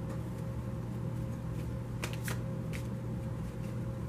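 A deck of oracle cards being shuffled by hand: soft rustling with a few sharp card snaps about two seconds in, over a steady low hum.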